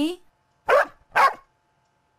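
A dog barks twice, about half a second apart, in reply to a greeting on a recorded listening track.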